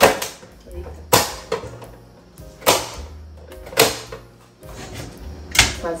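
Sharp knocks on a plastic cutting board, about one every second or so: a kitchen knife coming down while tomatoes are cut. Background music plays underneath.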